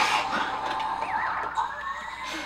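Cartoon sound effect from the anime: a brief loud outburst at the start, then a thin whistle-like tone that wavers and then glides slowly upward.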